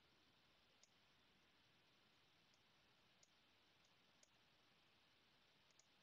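Near silence with about half a dozen faint, sharp computer mouse clicks scattered through it.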